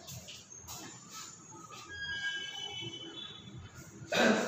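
Marker pen writing on a whiteboard: faint rubbing strokes, with a few thin, high squeaks of the felt tip in the middle.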